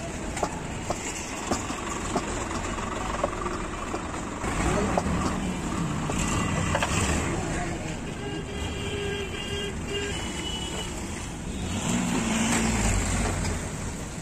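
Roadside traffic with passing vehicles and a couple of short horn toots. In the first few seconds a wooden rolling pin knocks lightly on the board as dough is rolled.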